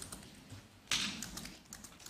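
Laptop keyboard being typed on: a few scattered keystrokes, with one louder tap about a second in and a quick run of light clicks near the end.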